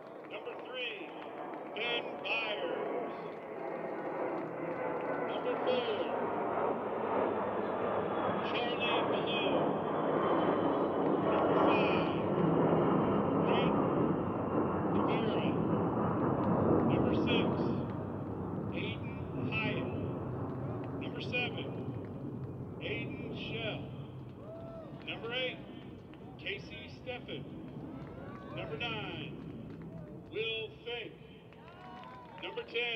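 An aircraft passing overhead: a broad rumble swells over several seconds, is loudest in the middle, then fades, with a faint whine that slowly falls in pitch.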